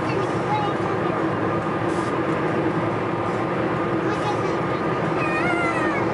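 Steady road and engine noise inside a car driving at highway speed, with a brief wavering high-pitched sound about five seconds in.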